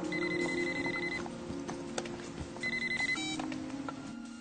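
Telephone ringing twice with a trilling electronic ring, the first ring about a second long and the second shorter, followed by a brief beep. Soft background music continues underneath.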